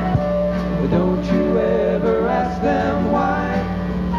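Live band music with guitar and a wavering melodic lead line, played between sung lines of a song.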